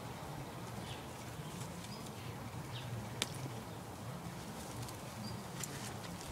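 Low, wavering background hum with a few faint, high bird chirps and one sharp click about three seconds in.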